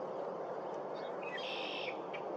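A short bird call about a second in, high-pitched and lasting under a second, over a steady low background noise.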